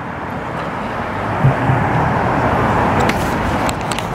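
Steady road traffic noise on a city street, growing a little louder toward the middle as vehicles go by.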